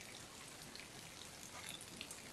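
Faint water drops ticking irregularly over a low steady hiss.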